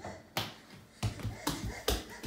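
About four sharp taps or knocks, irregularly spaced over two seconds.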